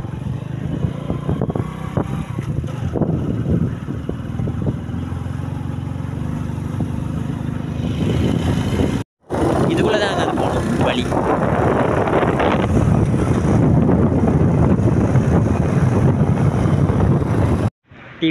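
Engine and road noise of a moving vehicle, a steady low rumble. It breaks off briefly about nine seconds in, then returns louder and denser.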